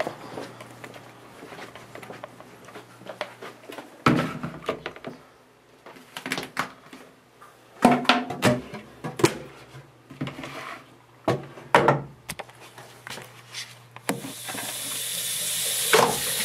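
Scattered knocks, clicks and rustles of a plastic jug and an aquarium filter being carried and handled, then, about fourteen seconds in, a bathroom sink tap turned on and running steadily into the basin.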